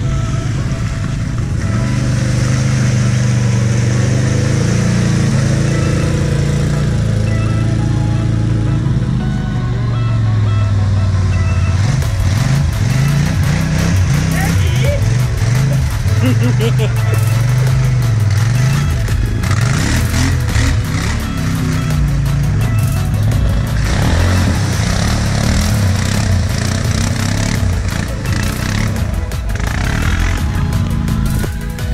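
ATV engines working through a muddy water hole, the revs rising and falling repeatedly in the second half as a quad churns through. Background music plays along with it.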